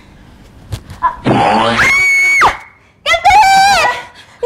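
Loud screaming: a harsh burst rises into a long, high held scream about a second in and breaks off, then near the end comes a woman's high, wavering wail.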